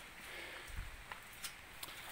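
Quiet outdoor background with faint footsteps on grass: one soft low thump a little before a second in and a few light ticks.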